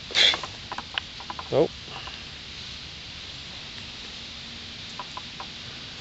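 Hands handling a mushroom and a pocket knife: a few faint clicks and rustles over a steady quiet outdoor background, with a brief spoken 'nope' and 'oh'.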